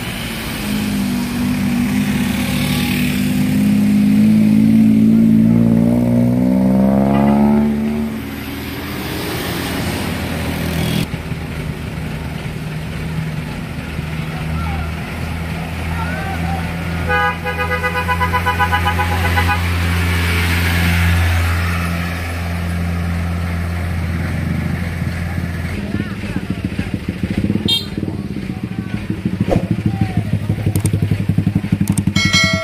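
A vehicle engine revs up with its pitch climbing for several seconds, then settles to a steady low running note. Partway through, a vehicle horn sounds once for about two seconds.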